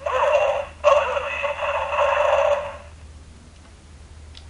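A recorded voice played back through the DX Signaizer toy's small speaker, thin and tinny, in two stretches that stop a little under three seconds in. The toy's weak speaker makes the playback soft.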